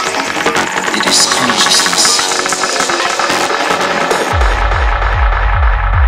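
Psytrance track: a busy, bassless synth passage, then the kick drum and bassline drop back in about four seconds in and drive on steadily.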